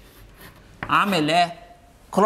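Faint chalk scratching on a blackboard as numbers are written, in the first second or so.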